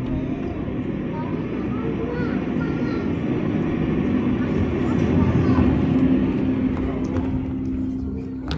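A steady low rumble with a constant droning hum, swelling a little past the middle, with faint children's voices over it.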